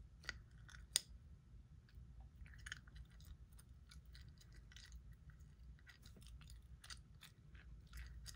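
Gum chewing close to the microphone: faint, irregular clicks and smacks, with one sharper click about a second in.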